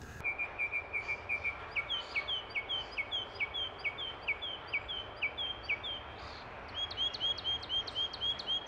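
Northern mockingbird singing, changing phrases in sequence: a rapid run of short chirps, then a two-note slurred phrase repeated many times, then a different, higher phrase repeated quickly near the end. This is the mockingbird's way of repeating each borrowed phrase several times before switching to another species' song.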